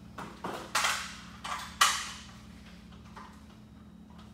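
A handful of sharp knocks in the first two seconds, the loudest near the end of that run, over a steady low hum.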